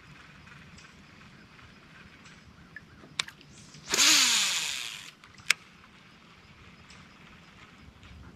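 A cast with a fishing rod and reel: a small click, then about a second of whirring hiss as line pays off the spool, its pitch falling as the spool slows, and a sharp click just after it stops. The rest is quiet.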